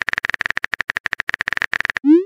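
Texting-app keyboard typing sound effect: a rapid, even run of short clicks, about a dozen a second, as a message is typed out.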